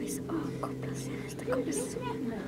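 Soft whispered speech over a steady low hum.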